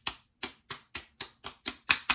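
Both palms patting bay rum aftershave splash onto freshly shaved cheeks: a quick, even run of light skin slaps, about five a second, the loudest near the end.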